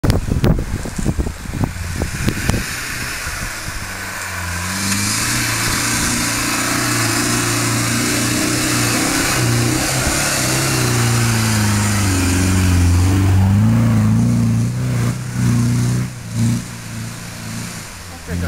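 Four-wheel-drive pickup's engine revving hard under load as it climbs a steep, loose-dirt slope, its pitch rising and falling with the throttle. Knocks and bumps come first, the engine sets in about four seconds in and drops away near the end.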